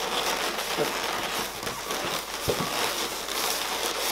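Inflated latex modelling balloons rubbing against each other and against the hands as their bubbles are pulled and arranged, a steady rustling with a few brief squeaks.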